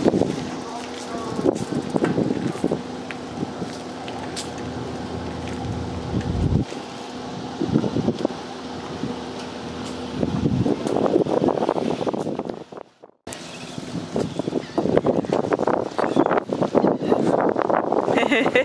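Indistinct talk, with wind noise on the microphone and a steady low hum through the first several seconds. The sound cuts out briefly past the middle.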